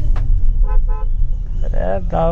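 Two short toots of a vehicle horn about a quarter of a second apart, heard from inside a car cabin over low road rumble.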